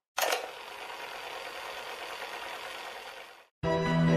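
A sudden hit followed by about three seconds of steady hiss, cutting off abruptly; music comes in near the end with sustained low notes, the opening of the song.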